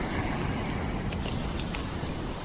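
Wind rumbling steadily on the microphone, with a few light clicks from the camera being handled a little after halfway through.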